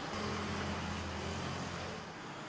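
A vehicle engine running steadily, a low even hum that starts just after the beginning and stops shortly before the end.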